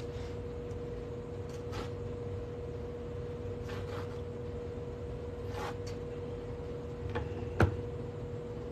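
Quiet room tone with a steady hum and a few faint ticks, then one sharp click near the end as hands take hold of a coin ring stretcher.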